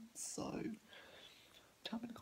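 A man's voice: a short breathy hiss, then a brief hesitation sound, followed by about a second of quiet room tone.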